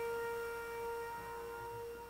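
A single held musical note with steady overtones, slowly fading out.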